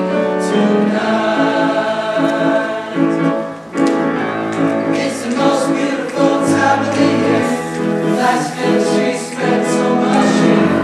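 Men's choir singing in harmony, holding chords that change every second or so, with a brief breath-pause about three and a half seconds in.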